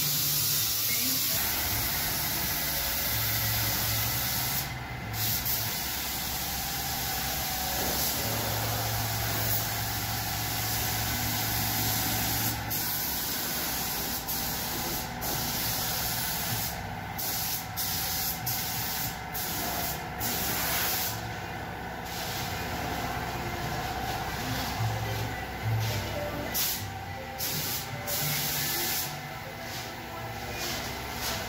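Gravity-feed compressed-air paint spray gun hissing as it sprays. The hiss cuts out briefly each time the trigger is let off, once about five seconds in and then in many short breaks through the second half.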